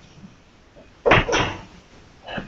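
Two quick knocks about a second in, a quarter second apart, from the laptop being handled close to its microphone.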